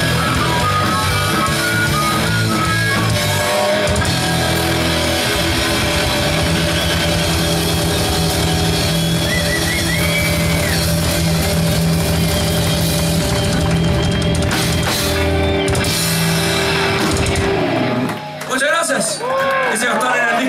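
Live rock band playing electric guitars, bass guitar and drum kit, with short harmonica notes near the start. The band stops together about two seconds before the end, and voices shout over the fading ring.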